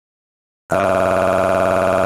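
Silence, then about two-thirds of a second in, a loud, steady, buzzy tone starts and holds at one pitch.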